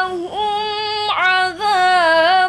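A girl's solo voice reciting the Quran in melodic tilawah style, holding long sustained notes with short ornamented turns in pitch.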